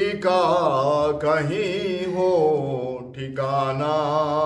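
A man singing a manqabat, an Urdu devotional song, solo, in long held phrases with a wide wavering vibrato.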